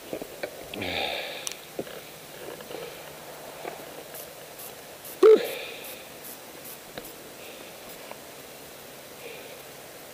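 A skier's breathing and sniffing over the faint hiss of skis sliding on snow, with one short, loud vocal sound about five seconds in.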